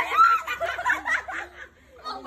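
Girls laughing and snickering, with a little chatter mixed in; the laughter dies down about a second and a half in.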